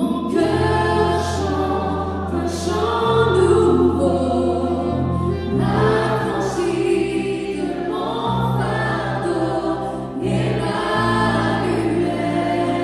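Men's and women's voices singing a gospel worship song together in phrases over keyboard accompaniment with sustained low notes.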